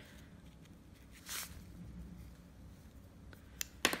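Handling noise from fitting a metal piping tip and coupler onto a piping bag: a short rustle of the bag about a second and a half in, then a few sharp clicks near the end.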